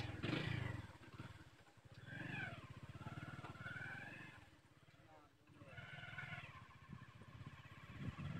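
Men's voices talking, over a low rapid throbbing that runs throughout.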